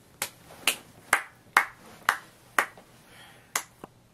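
One person clapping slowly and steadily in a small room, about two sharp claps a second, with a short pause before the last two.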